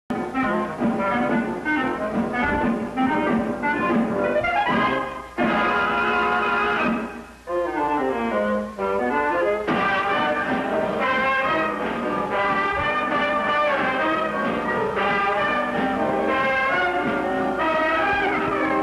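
Brass-led orchestral cartoon title music, bright and brassy, with a deep swooping glide down and back up partway through. A new cue starts about ten seconds in.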